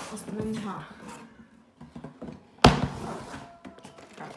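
A single sharp thump from a cardboard shipping box being handled, about two-thirds of the way in, after a second or so of talk.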